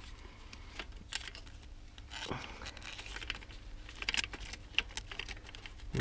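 Scattered light clicks and taps from small bicycle parts being handled and fitted by hand.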